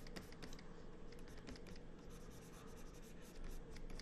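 Faint stylus strokes on a pen-display screen: the nib taps and scratches across the glass in short sketching strokes, a loose string of small clicks.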